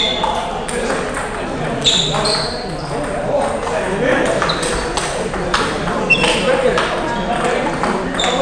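Table tennis balls clicking off bats and tables from several rallies at once, an irregular patter of sharp hits, with voices in the background.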